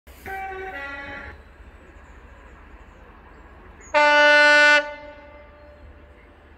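Class 66 diesel locomotive's horn sounding from down the line: a short high-low two-note blast, then a few seconds later a much louder single-note blast lasting under a second.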